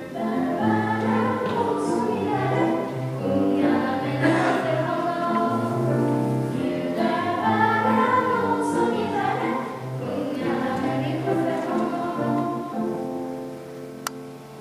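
Children's choir singing a song in unison, the singing ending near the end.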